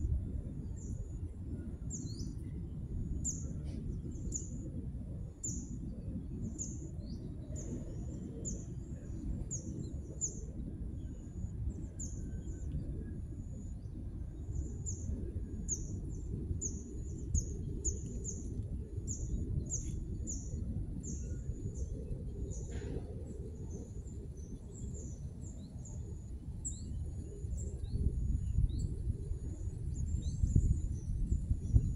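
A small bird repeating a short, high chirp roughly once a second, over a steady low rumble.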